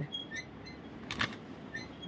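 Metal curtain eyelets clicking and sliding along a curtain rod as hanging curtain panels are pushed aside by hand. There are a few faint, light clinks and one sharper click about a second in.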